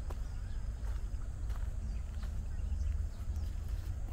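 Footsteps on a dirt trail strewn with dry leaves, a few separate steps, over a steady low rumble.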